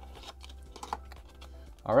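Cardboard box and clear plastic tray handled as the box is opened and the tray slides out: light scattered clicks and crinkles, with one slightly louder click about a second in.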